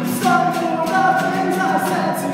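A singer holding long sung notes over a strummed acoustic guitar, echoing inside a concrete cement silo.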